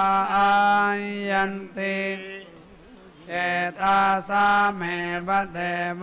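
Male priests chanting Vedic mantras in Sanskrit in long, held tones, with a brief pause about two and a half seconds in before the chant resumes.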